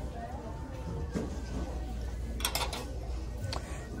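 Plastic shopping cart being pushed and handled with a low rolling rumble, and a short clatter about two and a half seconds in as glassware is set into it.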